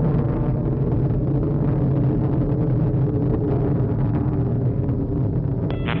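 Steady low rumble of a Delta II rocket in powered ascent, with its main engine and solid strap-on motors still burning.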